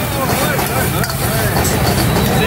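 Steady low rumble of a high-pressure gas wok burner, with voices over it.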